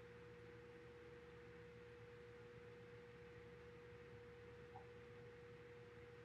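Near silence: room tone with a faint, steady single-pitched hum.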